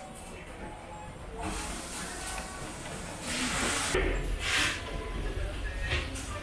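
Restaurant room noise with faint voices in the background, broken by two short hissing bursts a little past halfway.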